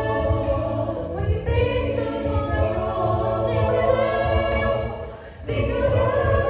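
A mixed-voice a cappella group singing in close harmony, with vocal percussion keeping a beat underneath. About five seconds in, the sound drops away briefly, then the full group comes back in.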